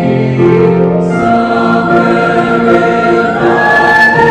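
Mixed choir of men's and women's voices singing sustained chords. About three seconds in, the upper voices step up to a higher held note.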